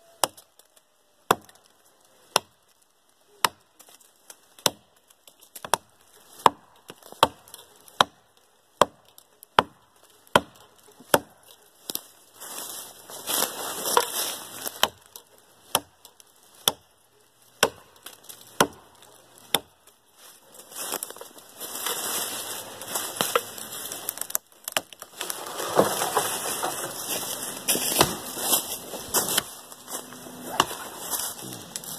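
A hatchet chopping into a small tree trunk, one sharp strike about every second. About halfway through, a continuous rustling noise joins in and grows louder, with strikes still among it.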